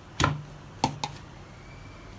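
Two sharp clicks about half a second apart, then a smaller third, each with a brief low hum, as the lid of a steel mixer-grinder jar is handled and held down.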